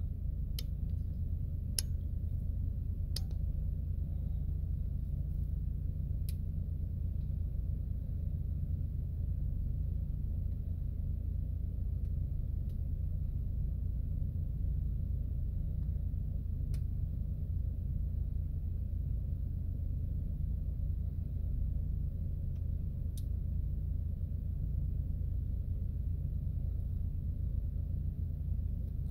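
A steady low rumble that holds an even level throughout, with a few faint clicks scattered through it.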